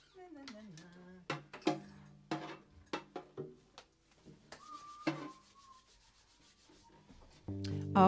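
Acoustic guitar being picked up and handled: scattered knocks, taps and rubbing of the wooden body, with a few brief string sounds. Music starts with a held chord near the end.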